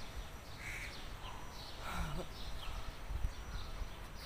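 Small birds chirping now and then over a steady low rumble.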